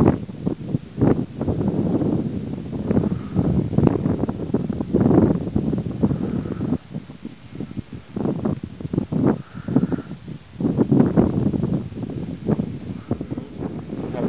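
Strong gusty wind blowing across the microphone, coming and going in loud, irregular rushes.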